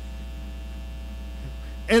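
Steady low electrical hum, like mains hum in a microphone or sound system, with no other sound until a man's voice begins right at the end.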